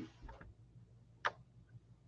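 A quiet stretch with one sharp computer-mouse click a little over a second in, as the listing viewer is being navigated.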